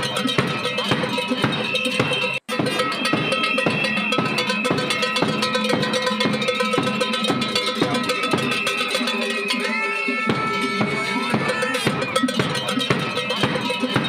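Cowbells clanging in a fast, steady rhythm with other percussion, a continuous loud din. It cuts out for an instant about two and a half seconds in.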